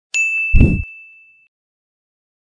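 Logo sting sound effect: a bright ding that rings out for over a second, with a short deep boom about half a second in, the loudest part.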